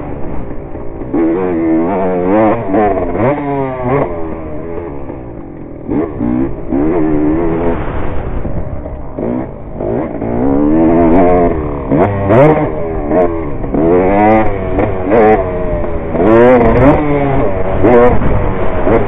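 Dirt bike engine ridden hard around a motocross track, its pitch rising and falling over and over as the throttle is opened and closed through the turns and jumps.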